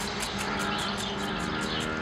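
Steady low motor-like hum with a fast, even high ticking and short falling chirps repeating about twice a second.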